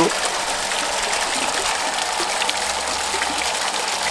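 Steady rush of water flowing and splashing in an aquaponic system's filter and tank, a constant even hiss.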